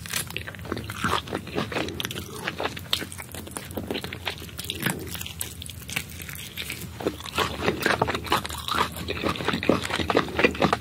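Close-miked biting and chewing of steamed lizard meat, skin and small bones: a run of quick, irregular crunches and wet clicks that gets busier and louder near the end.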